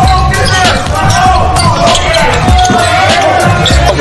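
A basketball being dribbled on a hardwood court during live play, with short squeaks in between.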